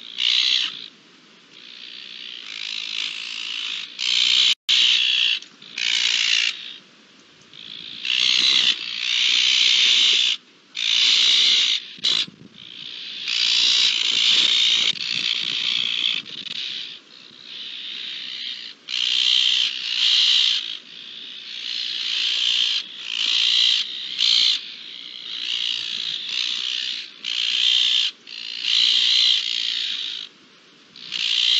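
A flock of Iberian azure-winged magpies giving harsh alarm calls, repeated in bursts of about a second with short gaps, the birds restless.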